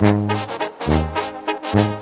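Banda sinaloense music in an instrumental break between sung verses: a brass section playing, with a tuba bass line stepping through a few held low notes and drum hits marking the beat.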